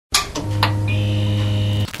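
Electronic intro sound effect: a few sharp clicks, then a steady low electrical hum with a high steady tone joining about halfway. It cuts off suddenly just before the end.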